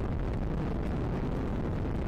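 Space Shuttle Discovery's solid rocket boosters and main engines firing during ascent, heard as a steady, even rumble.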